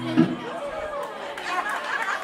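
A held, ringing chord from the amplified acoustic guitar cuts off with a sharp thump just after the start. What follows is the chatter of a seated audience, many people talking at once.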